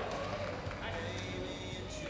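Arena ambience: indistinct voices and faint background music, with a few soft, irregular hoof thuds as a cutting horse works a calf in the dirt.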